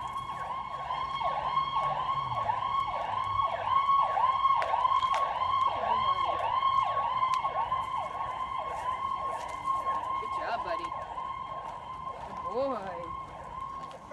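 Emergency-vehicle electronic siren in yelp mode: fast rising-and-falling wails, about three a second, growing louder toward the middle and fading near the end.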